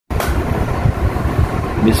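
Uneven rumbling handling noise from a phone's microphone as the phone is moved, with a click near the start and another just before the end.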